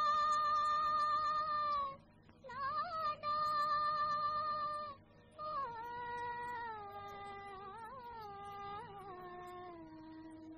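A woman singing long, held notes with a slight waver in the pitch, in a 1950s Hindi film song. There are two long notes of about two seconds each, then a phrase that steps downward through several notes.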